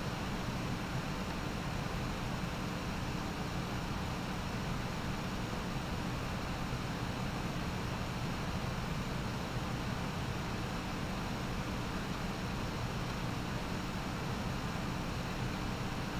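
Steady room tone: an even hiss with a low hum underneath and no distinct events.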